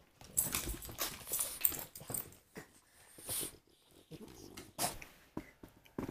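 Two French bulldogs making short, irregular breathy noises.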